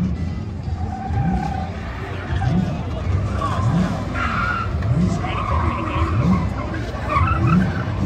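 Cars doing donuts and burnouts, tyres skidding and squealing on asphalt while an engine revs up again and again, about once a second.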